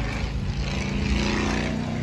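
A motor running steadily outdoors: a low drone with a hiss over it, beginning and ending abruptly at cuts.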